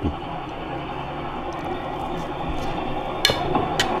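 Steady running noise inside a bus cabin, with two short clicks near the end.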